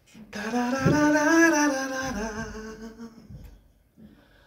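A man singing one long wordless note, gliding up a little and back down, held for about three seconds before it fades out.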